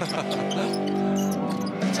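Arena music holding one chord for about a second and a half and then stopping, over a basketball being dribbled on the hardwood court.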